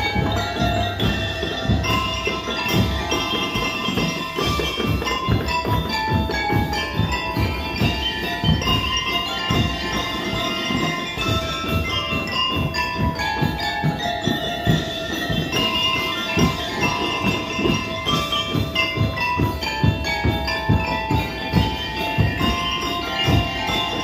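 A drum and lyre corps playing: bell-lyres struck with mallets carry a bright melody over a steady, dense beat of marching drums.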